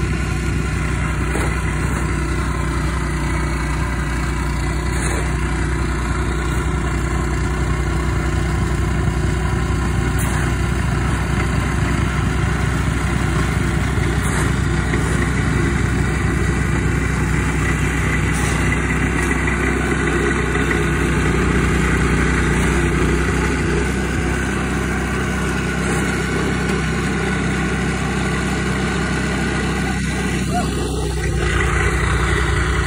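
Engine of a small snow-plowing vehicle running steadily at constant speed close to the microphone, slightly louder about two-thirds of the way through.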